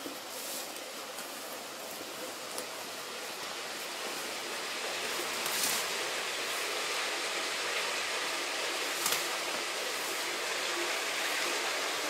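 Water falling and running inside an abandoned iron-mine gallery behind a grating: a steady rushing that grows louder about four seconds in. It is mine water from the flooded workings.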